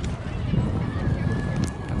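Outdoor ambience of a busy park lawn: irregular low thumps and rumble on a handheld camera microphone as the person filming walks, with distant voices of people around, and a word spoken right at the end.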